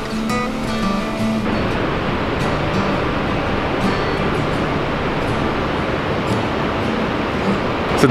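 Acoustic guitar music that cuts off about one and a half seconds in, giving way to the steady rush of a waterfall.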